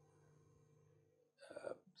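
Near silence: room tone with a faint steady hum, and a brief faint vocal sound from the lecturer, like a catch of breath, about a second and a half in.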